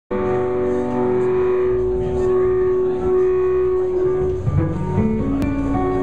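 Live band music of long ringing chords held on guitars, with lower bass notes coming in and the chord changing about four and a half seconds in.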